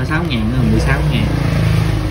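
A man's voice briefly speaking, over a steady low rumble like a running engine.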